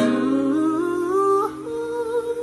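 A man humming one wordless held note that slides slowly upward and then steps higher near the end, over an acoustic guitar chord strummed once at the start and left ringing.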